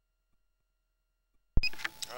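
Near silence, then about one and a half seconds in a sharp click as the microphone cuts in. A man's voice starts just after it over a faint steady hum.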